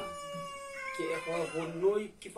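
A single long, high wailing cry that falls slowly in pitch and lasts about a second and a half, with men talking over its tail and after it.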